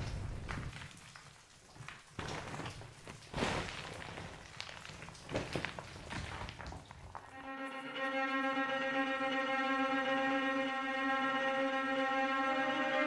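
Sound effect of a brick wall crumbling: a fading low rumble with scattered knocks and crackles of falling debris. A little past halfway, bowed strings come in and hold a steady chord.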